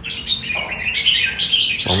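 Red-whiskered bulbul chirping: a continuous run of quick, high warbled notes.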